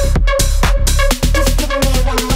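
Tech house track at 126 BPM: a steady four-on-the-floor kick drum, about two beats a second, under short repeating pitched synth notes.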